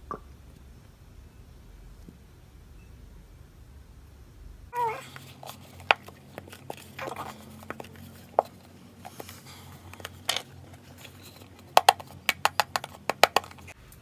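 Faint room tone, then a run of scattered sharp clicks and taps that speeds up to several a second near the end, the sound of small objects being handled and set down on a hard surface.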